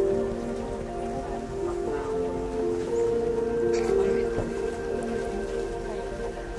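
Background music: a melody of held notes that change every half second or so, over a faint steady hiss.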